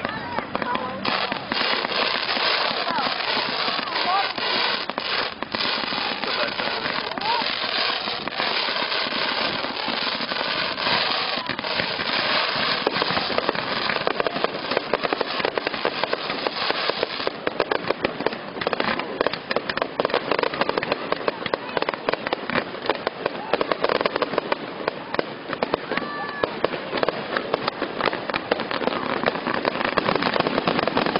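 Fireworks display: a dense, continuous run of crackles and bangs, with sharper, more frequent reports in the second half.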